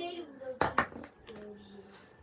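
A girl's voice trails off, then two sharp smacks about a fifth of a second apart.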